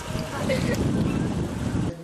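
Wind buffeting the microphone outdoors, a steady low rumble under a man's brief word and laugh.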